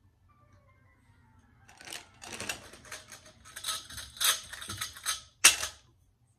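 Thin metal shoe-rack tubes clattering and clinking as they are handled and fitted together: a quick run of rattles starting about two seconds in, with one sharp knock near the end.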